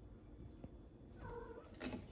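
A domestic cat giving one short meow about a second in, followed by a sharp tap near the end.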